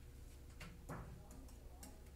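A handful of faint, irregular taps and clicks of a stylus on an interactive whiteboard as a short word is written, over a steady low hum.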